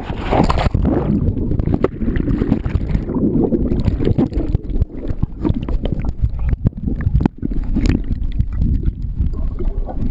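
Muffled underwater sound of a swimming pool picked up by a submerged camera: low rumbling water movement and gurgling bubbles, with scattered clicks.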